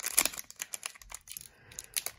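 Foil wrapper of a hockey card pack crinkling and tearing as it is handled and opened: a dense run of crackles in the first half second, then scattered crackles and clicks.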